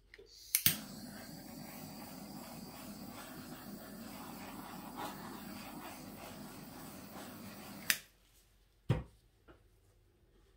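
Handheld butane torch clicking alight and burning with a steady hiss for about seven seconds as it is passed over wet acrylic paint to bring up silicone cells, then shutting off with a click. About a second later comes a single knock as the torch is set down on the table.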